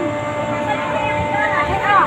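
Steady mechanical hum of large air-conditioning chiller units, two steady tones over a low drone, under the chatter of a crowd of people talking.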